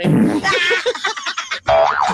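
Cartoon-style comedy sound effect dropped into the broadcast mix: wavering, warbling tones, then a quick rising springy glide near the end.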